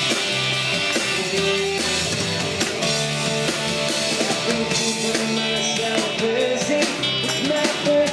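Live rock band playing, with electric guitars and a drum kit keeping a steady beat.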